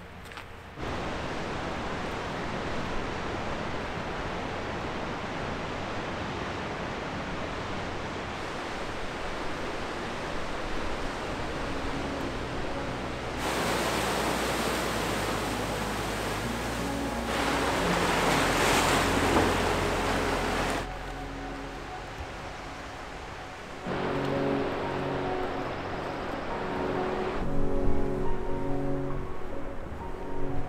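Ocean surf washing and breaking over rocks, a steady rush that jumps in level at several abrupt cuts and is loudest a little past the middle, with soft music underneath.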